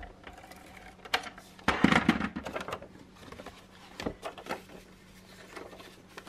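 A Scotch ATG adhesive transfer tape gun run along the edge of a sheet of paper, its mechanism rattling loudest about two seconds in, followed by scattered clicks and knocks as the paper is handled.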